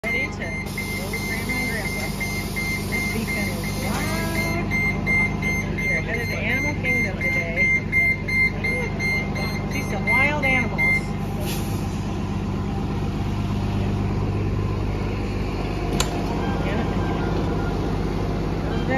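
A bus's wheelchair ramp deploying with a repeating warning beep, which stops about eleven seconds in once the ramp is down. The bus's idling engine hums steadily underneath.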